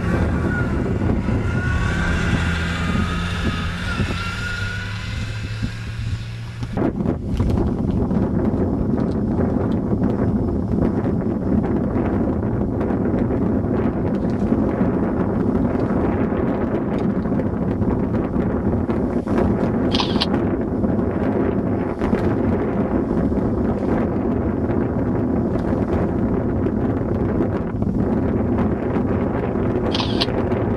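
Wind buffeting the camera microphone in a dense, steady rush from about seven seconds in. Before that is a quieter stretch with a low steady hum.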